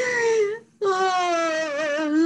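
A woman wailing in prayer: two long held cries that slide slowly downward, with a short break just before a second in.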